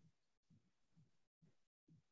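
Near silence: the quiet line of a video call, broken twice by brief spells of total digital silence.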